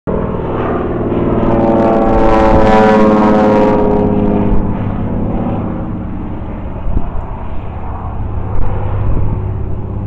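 Engine and propeller of a low-flying crop-duster airplane passing overhead, growing loudest about two to three seconds in, then fading away. A few brief knocks sound near the end.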